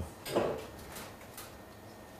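A pause in speech: a short vocal breath about half a second in, then a few faint clicks over quiet room tone.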